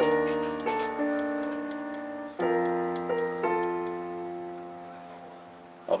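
Recorded keyboard chords playing back, each chord held and fading away, with fresh chords struck at the start and about two and a half and three and a half seconds in, over a steady ticking click like a metronome.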